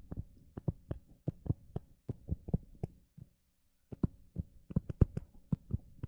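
Stylus tapping and clicking on a tablet's glass screen during handwriting: a quick, irregular run of small taps, with a pause of about a second around three seconds in.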